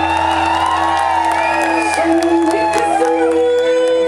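Live band music: a violin playing sliding, swooping lines over held drone notes and a steady bass from electronic backing.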